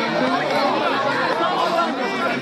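Crowd of spectators chattering and calling out, many voices overlapping at a steady level.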